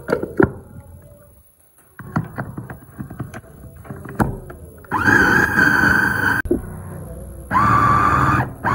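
Electric food chopper being closed, its lid and stainless motor unit clicking and clattering into place on the bowl, then the motor running with a high whine for about a second and a half, stopping, and starting again near the end as it mixes a thick potato dough.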